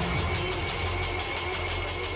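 A 3-amp electric blender running at a steady speed: a constant motor hum with a fixed high whine over it.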